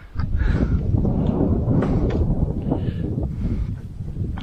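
Wind buffeting the microphone, with a plastic kayak hull scraping through shallow water and grass as it is pushed ashore, and a few sharp knocks along the way.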